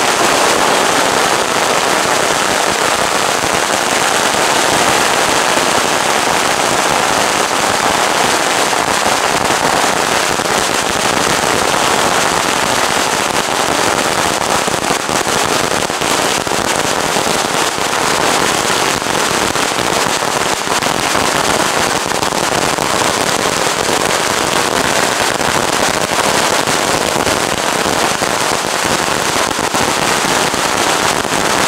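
Long strings of firecrackers going off on the road in a dense, continuous crackle of rapid bangs, with no pause.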